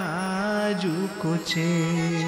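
A man singing a devotional Hindi verse, drawing out its last syllable 'jū' with a bending melodic ornament, over a steady held harmonium note.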